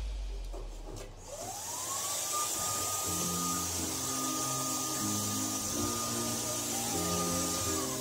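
A handheld corded electric tool's motor spins up about a second in with a rising whine. It runs with a steady whine and air hiss, then winds down near the end. Background music plays underneath.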